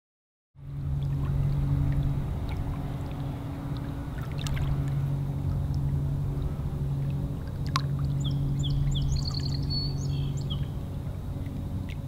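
Lakeside ambience: a motorboat engine droning steadily across the water, with water sloshing. A few bird chirps come near the end.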